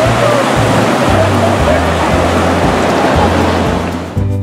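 Rushing whitewater of a river rapid, a loud steady hiss, with background music playing underneath.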